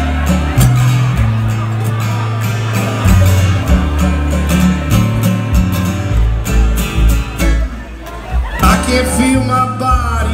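A live bluegrass band plays an instrumental passage of acoustic guitar and other plucked strings over upright bass, whose changing low notes are the loudest part. The music thins briefly about eight seconds in, then a gliding lead line comes back in.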